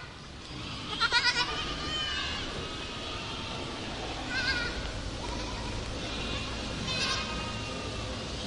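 Young goats bleating in quavering calls: a loud one about a second in, then shorter ones around four and a half and seven seconds.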